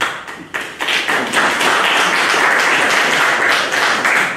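Audience applauding: a few separate claps at first, building within about a second into steady applause.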